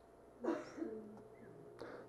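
A faint, brief low murmur of a person's voice about half a second in, in an otherwise quiet room during a pause in a talk.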